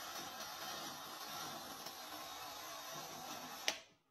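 High-voltage plasma device with copper coils running with a steady hiss, then a switch clicks near the end and the sound cuts off.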